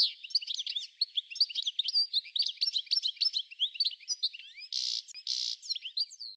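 Birdsong: many small birds chirping and twittering in quick, overlapping calls, with two short buzzy bursts near the end.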